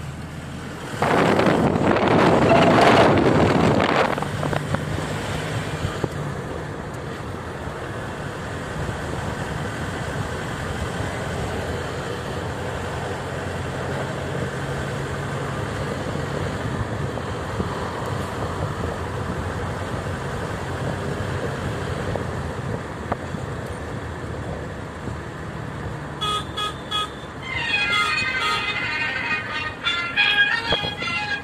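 Steady engine and tyre noise inside a moving car's cabin, with a loud rush of noise from about a second in that lasts roughly three seconds. Music starts near the end.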